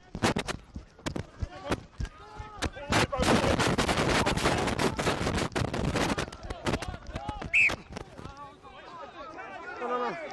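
Sounds from the side of a rugby pitch: scattered sharp knocks, then a few seconds of dense rapid cracking like clapping. About three-quarters of the way in comes a short, high referee's whistle blast, with shouting voices around it.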